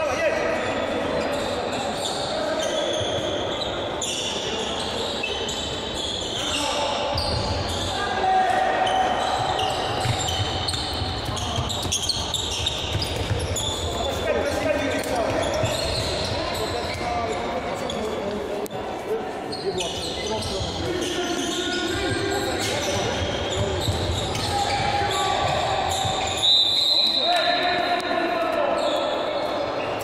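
Handball being bounced on a hard sports-hall floor during play, with sneakers squeaking on the court and players calling out, all echoing in a large hall.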